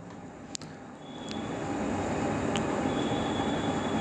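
Steady rushing background noise that swells over about the first second and then holds, with a few faint clicks.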